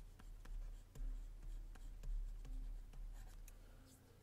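Stylus writing on a pen tablet: faint, irregular small taps and short scratches as a few words are handwritten, over a low steady hum.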